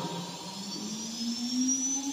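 CNC router spindle motor spinning up, a whine rising steadily in pitch.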